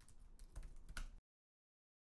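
A few faint computer keyboard keystrokes, the last about a second in, after which the sound cuts off to dead silence.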